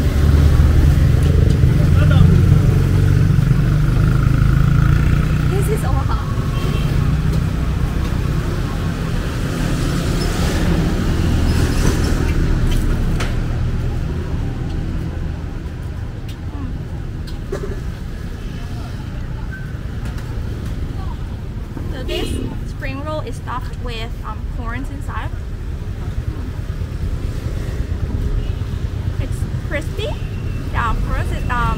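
Street traffic: a motor vehicle's engine rumbling close by, loudest in the first half and easing off about halfway through, with a few brief voices later on.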